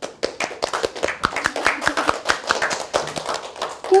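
A small group of children and an adult clapping by hand, a short round of applause that thins out near the end.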